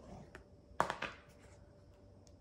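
A few light knocks and handling sounds as a plastic Tupperware gelatin mold is picked up off a stone counter, the loudest a little under a second in, over quiet room tone.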